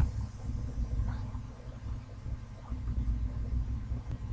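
Low, steady background rumble with a faint hiss, no speech.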